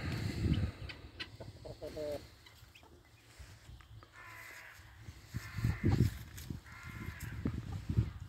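Domestic chickens clucking, with three drawn-out calls in the second half. Low thumps run throughout, loudest near the start and around the sixth second.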